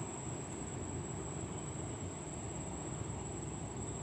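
Steady outdoor ambience: a continuous high, even insect drone, typical of crickets, over a low steady rumble.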